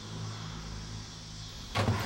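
A car engine running with a low steady hum, then a loud door thump near the end.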